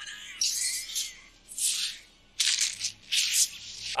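Sound effects from an anime fight scene: four short bursts of hiss, each lasting about half a second.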